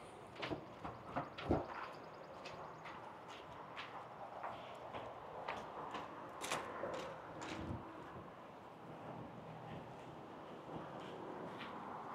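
Quiet clicks and knocks of an RV's entry and screen door being opened and passed through, with a thump about a second and a half in and another near eight seconds, over faint outdoor background noise.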